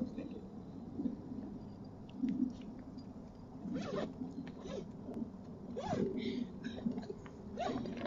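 Adidas sports duffel bag being worked open by hand: its zipper tugged and the fabric rustling and scraping in short, scattered sounds.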